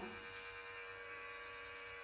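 Mary Kay Skinvigorate sonic facial cleansing brush running with a steady buzzing hum, its bristle head resting on a raw egg yolk. The head vibrates rather than rotates.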